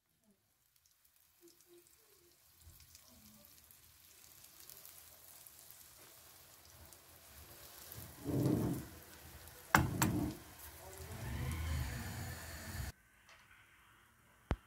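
Egg-and-cheese patties sizzling in shallow oil in a frying pan, the crackle faint at first and growing louder. Partway through come a thump and a sharp clack as the pan is handled, and the frying sound cuts off suddenly near the end.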